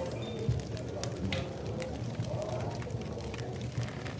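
Tavern ambience: a crowd's low murmur of chatter with scattered clinks of cups and dishes, under faint instrumental music.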